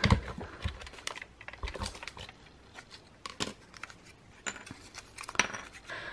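Scattered clicks, taps and light rustles of paper and plastic being handled at a tabletop: a plastic folder and paper worked through a small die-cutting press, with the sharpest click right at the start.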